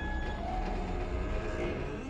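Film soundtrack ambience: a steady low rumble with a few faint held tones underneath, like the drone of a large underground space.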